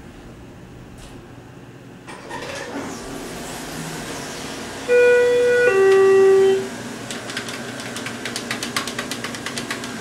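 Schindler elevator's arrival chime: two clear notes about five seconds in, the second lower than the first, each lasting about a second. A run of quick clicks follows.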